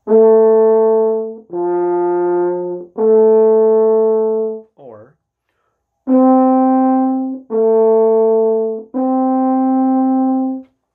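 French horn playing two groups of three sustained notes, each going up, down and back up. In the first group the middle note sits well below the others; in the second, starting about six seconds in, the notes lie close together, the sign of having landed on notes too high in the horn's range.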